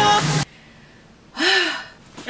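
K-pop song playing, cutting off suddenly about half a second in. Near the end, a woman lets out a single breathy sigh whose pitch rises and then falls.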